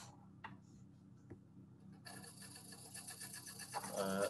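A small fully 3D-printed brushed electric motor, with a copper-tape commutator, starts running about halfway through. It makes a faint, fast, steady ticking whirr.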